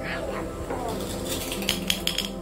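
Hard plastic toy fruit pieces clacking on a tiled floor, with a few sharp clicks near the end as a piece is set down.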